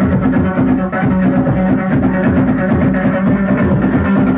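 Loud live electronic dance music with a heavy bass line built on a repeating low note. There is a brief dip in loudness just before a second in.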